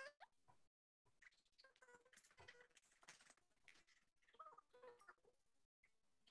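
Near silence in a video call, with only very faint traces of a voice now and then.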